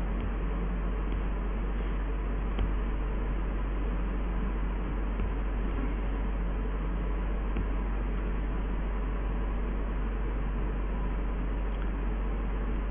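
Steady background hiss with a constant low hum, the room tone of the recording, with one faint click about two and a half seconds in.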